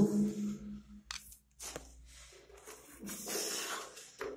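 A hand rummaging through a plastic tool caddy, tools clattering and rustling about three seconds in, after a couple of light clicks.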